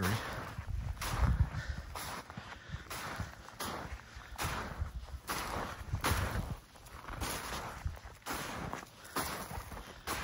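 Footsteps of a person walking through deep snow, a steady step about every two-thirds of a second.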